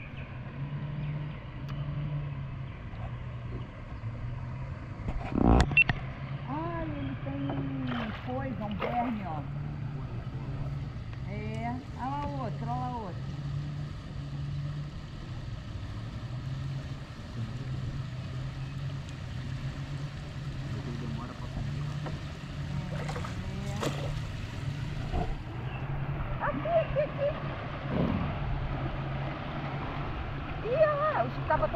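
River water moving around a bamboo raft as it is poled downstream, over a steady low hum, with two sharp knocks and some distant voices. The water grows choppier and louder near the end as the raft runs into rougher water.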